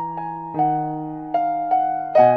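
Solo piano improvisation at a slow pace: chords and single notes struck about four times, each left to ring and fade before the next.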